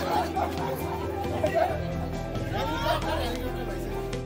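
Several people chatting over added background music with steady held notes and a low bass.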